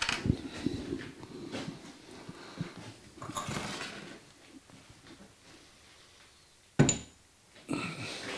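Workshop handling noises of metal parts: faint clinks and rustling, then one sharp metallic clank with a brief ring near the end.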